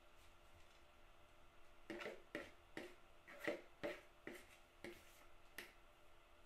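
Metal spoon tapping and scraping on ceramic as crumbly pecan crust mixture is knocked out of a mixing bowl into a baking dish. About eight light, uneven clicks start about two seconds in.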